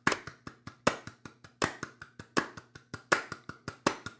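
Hands clapping sixteenth notes, four claps to each beat of a metronome ticking at 80 beats per minute, about five strokes a second. The on-beat strokes are loudest.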